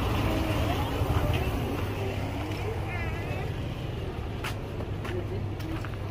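A vehicle engine idling with a steady low rumble that eases slightly, under faint background voices. A few sharp clicks come in the second half.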